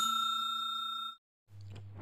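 A bell-chime sound effect ringing out with several clear tones, fading steadily and then cut off abruptly about a second in. A faint low hum follows near the end.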